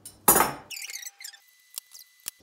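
Handling a tin can wound with jute twine: a brief, loud squeaky scrape about a quarter second in, followed by a few faint clicks.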